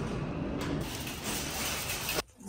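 Wire shopping cart pulled free from a row of nested carts and rolled, a steady rattling of its wheels and wire basket.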